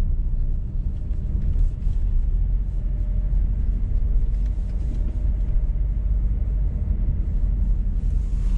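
Car's engine and tyre noise heard from inside the cabin while driving: a steady low rumble.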